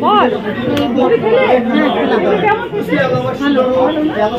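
Speech only: several people talking at once, women's voices chattering in a large room.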